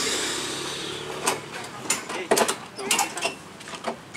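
Irregular sharp clicks and knocks as heavy speaker cabinets are handled and secured on a truck with a rope or strap. An engine-like noise fades away over the first second.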